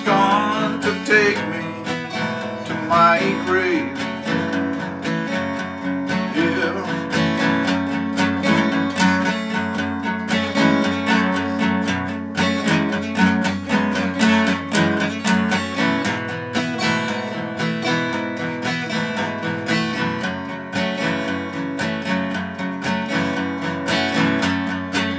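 Steel-string acoustic guitar strummed in a steady rhythm, playing an instrumental break between sung verses of a folk song.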